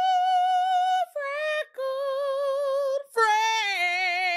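A female voice singing a short intro jingle in long held notes with vibrato. A high held note ends about a second in, followed by a short lower note and then a longer wavering one. About three seconds in, a higher note is joined by a second, lower voice in harmony.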